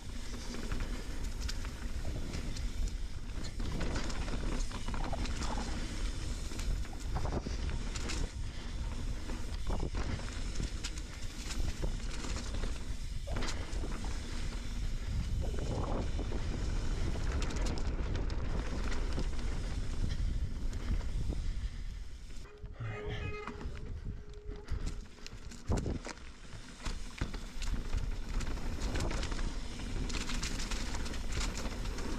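A mountain bike rolling fast down dirt singletrack: its tyres rumble over packed dirt, rocks and dry leaves, wind rushes over the chin-mounted camera's microphone, and the bike gives off frequent knocks and rattles. The noise eases for a few seconds about three-quarters of the way through, and a brief steady tone is heard then.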